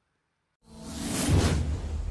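Silence, then about half a second in a whoosh sound effect sweeps in over a deep bass swell, growing loudest just past the middle: the opening of a news programme's logo sting, carrying on as music.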